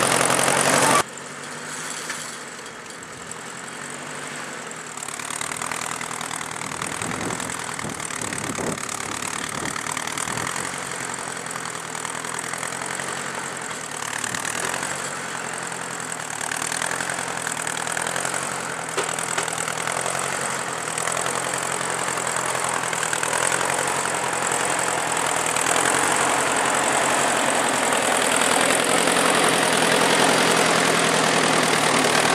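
1953 Ford Jubilee tractor's four-cylinder gasoline engine running under load as it pulls a two-bottom plow through unplowed sod. It is heard loud and close from the seat for the first second, then more distantly, growing steadily louder as the tractor plows toward and past the listener.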